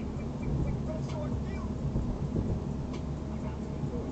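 Steady road and engine rumble of a car cruising at about 42 mph, heard from inside the cabin, with faint voices under it and a couple of light ticks.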